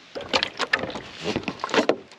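Handling noise from a resealable container being worked and pressed shut: a quick run of irregular clicks, knocks and rustles.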